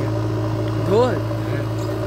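JCB backhoe loader's diesel engine running with a steady low hum while it loads soil into a trolley. A voice says a short word about a second in.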